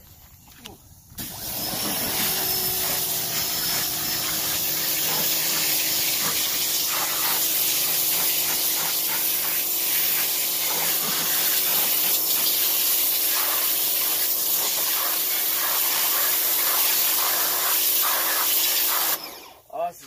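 A pressure washer starts up about a second in and runs steadily, a constant hum under a hiss of spray, then cuts off abruptly shortly before the end.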